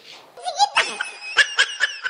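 Laughter: a high-pitched laugh in quick repeated bursts, starting about half a second in.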